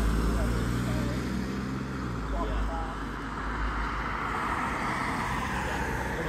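A Ford Transit passenger van driving away, its engine and tyre noise fading over the first two seconds, leaving steady street traffic noise.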